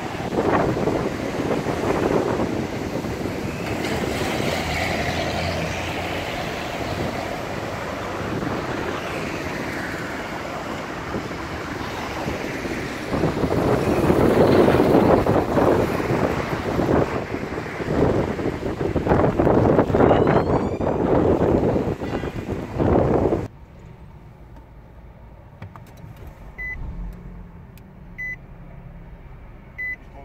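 Street traffic noise with wind buffeting the microphone. About 23 seconds in this cuts off abruptly to the quiet inside of a car, where a Nissan X-Trail's dashboard chime beeps softly, repeating about every second and a half.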